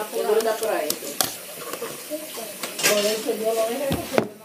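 Children's voices, low and indistinct, over a crackling rustle from a handheld phone or camera being moved about, with a sharp knock about a second in and another near the end.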